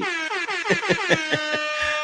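A loud horn-like tone that glides down in pitch over about a second, then holds several steady notes, over short rhythmic pulses of laughter.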